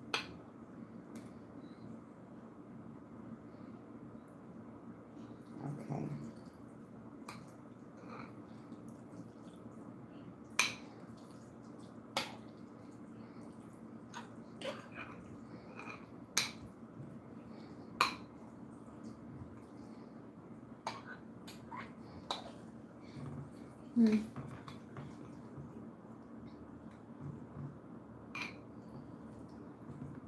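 A spoon tapping against a bowl and serving tray at irregular intervals while scooping and spreading chicken salad, about a dozen short sharp clicks over a steady low hum.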